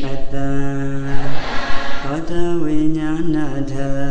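A Buddhist monk chanting into a microphone in a single male voice with long, held notes, stepping up in pitch about two seconds in and settling back down near the end.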